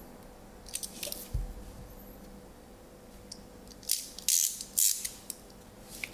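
Vinyl record packaging being handled: short crinkling, rustling bursts, loudest from about four to five seconds in, with a soft low thump about a second and a half in.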